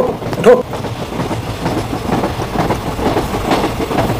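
Steady running noise of a moving train on the rails. It opens with two short vocal sounds, about half a second apart.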